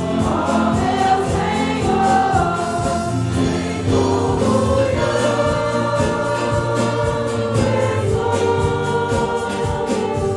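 A group of voices singing a Portuguese worship hymn with instrumental accompaniment and a steady beat.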